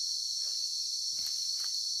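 A steady, high-pitched insect chorus fills the forest, with a few faint rustles from the undergrowth.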